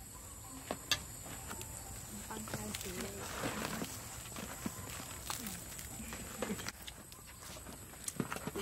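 Crusty baguettes being handled and pulled open, the crust giving scattered short crackles and clicks, under soft low voices and a steady high-pitched hiss.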